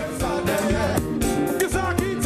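Live konpa band playing loudly, with guitar and singing over a steady drum beat.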